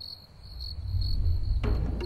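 Cricket chirping, a high chirp repeating about three times a second, over a low swelling rumble. Near the end, music starts suddenly with steady held notes.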